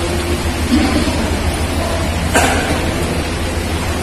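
Steady hiss with a continuous low hum, and one brief knock about two and a half seconds in.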